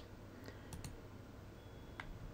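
A few faint, sharp computer mouse button clicks over quiet room tone, as an on-screen button is clicked.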